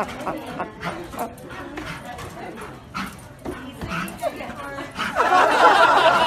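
A dog whining and yelping excitedly, mixed with people's voices; the sound grows louder and busier about five seconds in.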